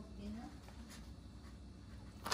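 Permanent marker writing on freezer paper, a few faint strokes, with a faint voice briefly near the start.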